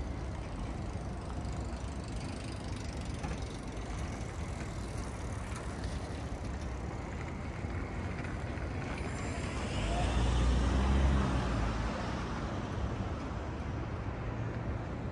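City traffic noise, a steady hum of road vehicles. About ten seconds in a vehicle passes close, its engine rumble and tyre noise swelling and then fading.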